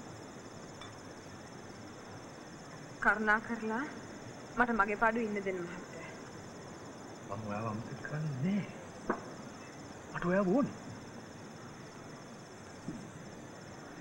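A steady, high-pitched chorus of crickets runs throughout. Over it, a man and a woman speak a few short lines.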